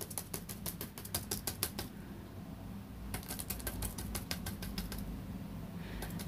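A flat brush dabbing thick heavy body gel glue onto paper wings, making rapid runs of light taps. One run comes at the start and another after a short pause.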